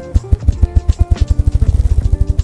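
Ruffed grouse drumming: a male's wingbeats make a series of low thumps that speed up into a rapid roll in the second half, part of its spring mating display. Background music plays along with it.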